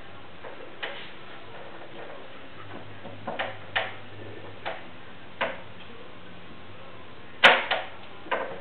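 Gymnastics rings and their straps clicking and knocking as a man lowers himself slowly through a negative muscle up. About half a dozen short, irregularly spaced clicks, with a louder, sharper knock near the end.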